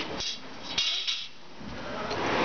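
Fiberglass insulation batt being handled and lifted, giving two short bursts of high-pitched rustling, a brief one about a quarter second in and a longer one around one second in.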